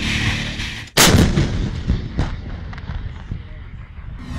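Background music cuts off and artillery fires: one loud blast about a second in, dying away in a rumble, then two fainter bangs about a second later.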